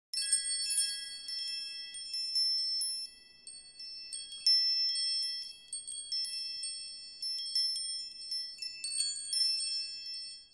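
Chimes ringing: many high, clear metal tones struck in quick clusters, the loudest near the start, about midway and near the end, each ringing on and overlapping the next.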